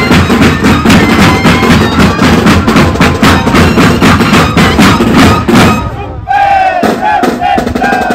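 A moseñada band of moseño cane flutes with bass drums and snare drums playing a fast, steady drum-driven tune. About six seconds in, the drums stop and the flutes hold a high, reedy note in a few short breaths. The drums come back in near the end.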